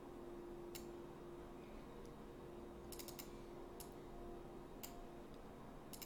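Faint, scattered clicks of a computer mouse and keyboard, with a quick run of three about three seconds in, over a low steady hum.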